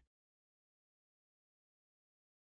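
Complete silence: the audio track is cut to nothing.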